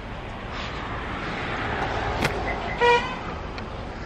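A vehicle passes on the road, its noise swelling and then fading, and gives one short horn toot about three seconds in.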